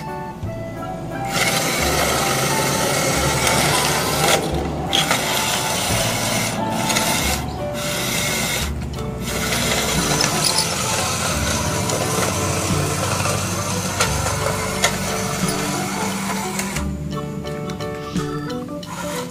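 Background music with a bass line, over the whir of a toy excavator's small electric drive motor as it crawls along on its plastic tracks. The whir starts about a second in, cuts out briefly several times, and stops near the end.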